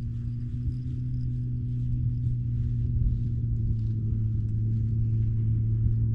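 An engine idling steadily, a low, even hum, with wind rumbling on the microphone.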